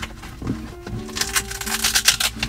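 Background music, and about a second in a rapid crackling rasp of handling noise as a fabric tool pouch is pulled out of a plastic center-console storage bin.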